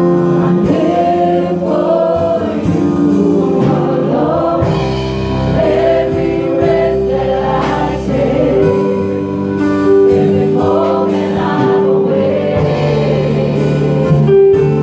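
A small group of men and women singing a worship song together. They sing over instrumental accompaniment of held chords and a light, regular beat.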